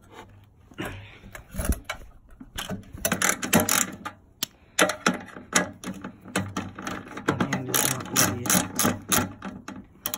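Socket ratchet clicking in quick runs as a bolt on a generator's frame is turned, starting about a second in with a short pause near the middle.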